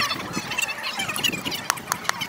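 A metal spoon clinking twice against a glass cup near the end, the second clink just as the spoon goes into the glass, over a busy background of short chirpy sounds.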